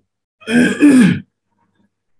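A man clearing his throat: one short two-part sound about half a second in, lasting under a second.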